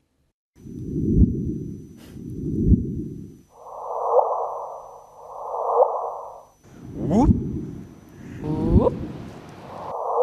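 Gravitational-wave signal of two black holes spiralling together and merging, converted to audio: six rushes of noise about a second and a half apart, each ending in a quick rising chirp. The first two are low in pitch, the next two higher, and in the last two the upward sweep is plainly heard.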